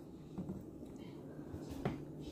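Faint handling of a plastic cooking-oil bottle as a hand tries to twist off its tight cap, with a sharper click near the end.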